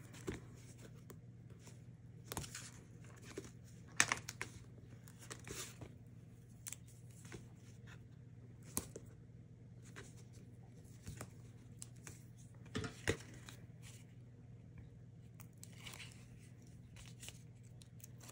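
Double-sided adhesive tape (Tear & Tape) being torn by hand and pressed onto cardstock: faint, scattered tearing and crinkling, with the sharpest snaps about four and thirteen seconds in.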